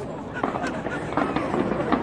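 Fireworks going off in a quick series of bangs and crackles, getting louder about half a second in, mixed with people's voices.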